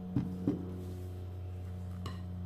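A steady low hum, made of several even tones, throughout, with two short dull knocks close together near the start as the glass measuring jug and wooden spoon are handled over the bowl of dough.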